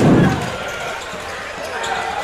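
A basketball bounces once on the hardwood court with a low thud at the start, then the crowd murmurs in the large sports hall.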